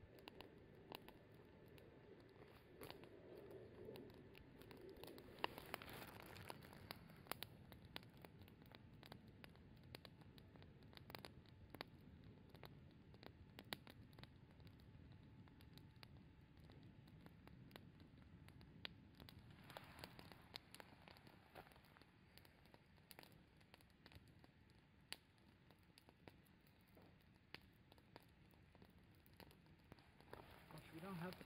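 Wood campfire crackling faintly, with scattered sharp snaps and pops from the burning branches.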